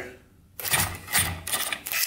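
Electric starter-generator on a 1971 Yamaha CS200 two-stroke twin cranking the engine over, starting about half a second in, in even pulses about three a second. The brush is held down by hand because its worn spring no longer presses it onto the commutator.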